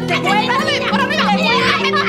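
Several women squealing and shrieking with excitement, high voices gliding rapidly up and down, over background music.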